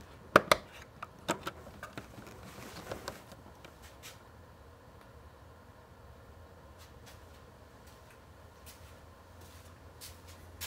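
Plug of a power cord being pushed into the receptacle of a small plug-in inverter: two sharp clicks close together, then a few lighter knocks over the next few seconds. A faint low hum remains afterwards.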